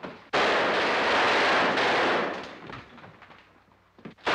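Gunfire in a film battle scene: a loud burst starts abruptly about a third of a second in, holds for about two seconds, then fades away, and another burst starts right at the end.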